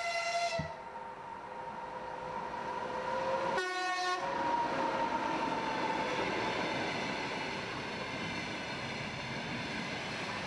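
A passenger train passing close by on the tracks, its running noise building after the first second and then holding steady. Its horn sounds briefly at the start and again in one short blast about four seconds in, as a warning signal.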